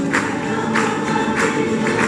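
A tuna, a student minstrel troupe, singing together in chorus, with a tambourine beat a little under twice a second.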